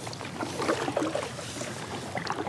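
Kayak paddle working the water: small irregular splashes as the blade dips and water drips off it.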